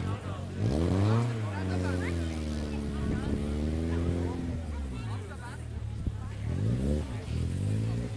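Rally car engine revving as the car takes a corner. The revs climb about a second in, hold high through the middle, drop off, then rise again twice in quick succession near the end.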